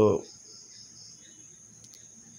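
A spoken word ends right at the start. Then comes a faint, steady, high-pitched insect trill in the background.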